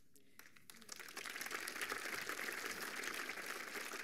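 Audience applauding, a dense patter of many hands clapping that starts about half a second in and holds steady.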